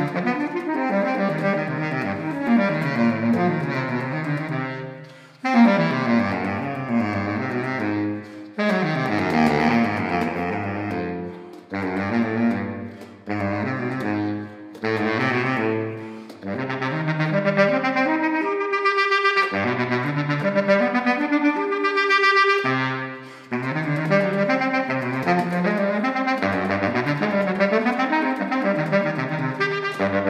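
Selmer Super Action 80 Serie II baritone saxophone played solo, racing through fast runs and arpeggios of an allegro étude in A minor. The phrases are broken by short gaps every few seconds, with a passage climbing into the high register a little past the middle.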